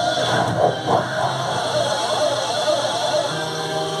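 Crowd noise from the show audience, then a steady held chord of music from the stage loudspeakers coming in about three seconds in.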